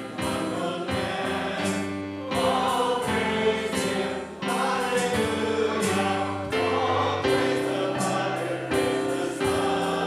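Choral music: a slow hymn-like piece of held sung chords that change every second or two.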